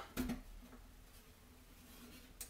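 Quiet room tone, with the tail of a spoken word in the first moment.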